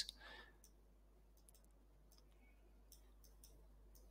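Faint computer mouse clicks, a scattered handful, as items are clicked and dragged on screen, over near silence.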